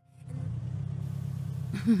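Sound effect of a car engine running steadily, fading in at the start, with a voice exclaiming and laughing near the end.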